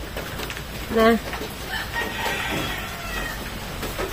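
A faint, high-pitched animal call in the background, drawn out for about a second and a half, just after a short spoken word.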